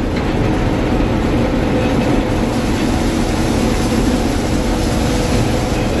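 Gleaner M2 combine running under load while cutting soybeans, heard from inside the cab: a loud, steady, unbroken mechanical rumble with a faint steady hum.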